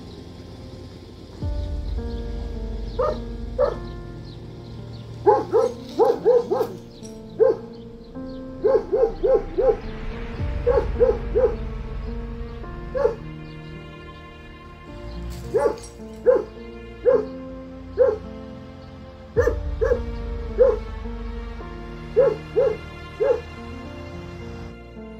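A dog barking repeatedly in quick runs of two to four barks, over background music with held chords and a deep bass note every nine seconds or so.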